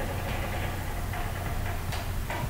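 Steady low hum with faint background noise.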